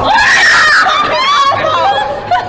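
Startled screaming from a woman jumped at by a costumed prankster: a loud, high scream held for under a second, then shorter rising and falling cries.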